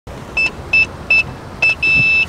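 Electronic keypad lock beeping as its buttons are pressed: four short high beeps, then a longer beep of the same pitch starting near the end.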